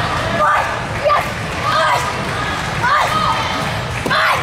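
A young girl's short, high-pitched kiai shouts during a sword form, several in a row, over the murmur of a crowd in a large hall.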